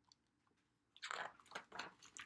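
Pages of a hardcover picture book being handled and turned: a dry, crackly rustle of paper in quick irregular bursts, starting about a second in after near silence.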